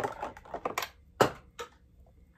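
Sticky squishy toy balls being handled and pressed together, giving a quick run of sharp sticky clicks, with the loudest single click a little past a second in.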